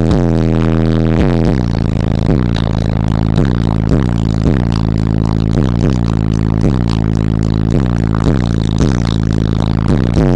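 Bass-heavy music played very loud through a car audio system of four walled Audioque 18-inch subwoofers on two Audioque 3500 amplifiers, heard from inside the cabin. A deep bass line slides downward in pitch over and over, about twice a second.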